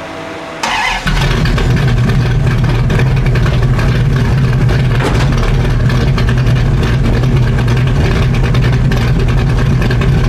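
1968 Plymouth Barracuda's engine coming in suddenly about a second in and running loud and steady.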